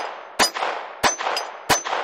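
Ruger LCP II pocket pistol in .22 LR firing three shots in a steady string about two-thirds of a second apart, each crack trailing off in an echo.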